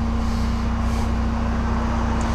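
Tow truck engine idling with a steady low drone and a constant hum.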